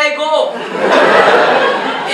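A man speaks a line on stage. About half a second in, a theatre audience breaks into laughter that lasts for a second and a half.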